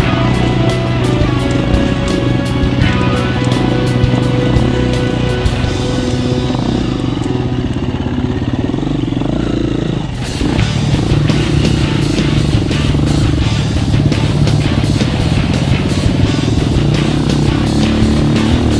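Rock music with a dirt bike engine running underneath.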